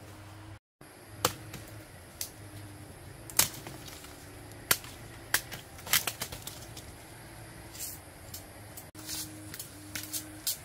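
Machete or large knife striking bamboo stems: a series of sharp, irregular knocks, some in quick clusters.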